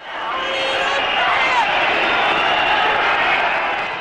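Crowd noise: a mass of many voices together, fading in over the first half second and then holding steady.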